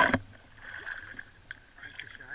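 River water splashing and lapping close to the microphone around a large wels catfish held at the surface: a loud splash ends just as the sound begins, then quieter lapping with a single sharp click about one and a half seconds in.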